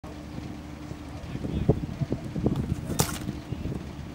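A football is kicked with a sharp smack about three seconds in, after a series of soft, quick thuds from running steps on grass. There is wind on the microphone throughout, with a faint steady hum.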